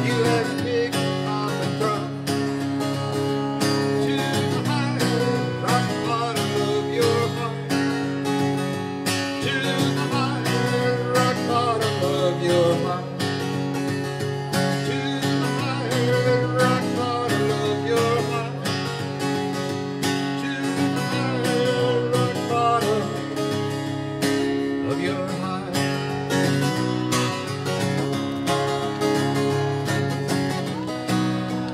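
Acoustic guitar strummed steadily through an instrumental passage, with bass notes below and a wavering melody line above.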